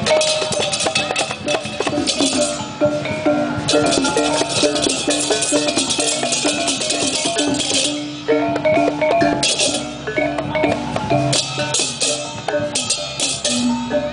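Indonesian processional gamelan playing: kendang barrel drums, clashing hand cymbals and gongs in a dense rhythm, with repeated pitched gong notes underneath. The cymbal clashes drop out briefly a few times.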